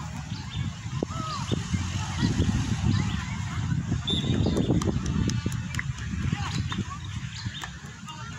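Low rumble of wind and handling noise on a handheld microphone, with faint distant shouts of children playing football and a few sharp ticks in the second half.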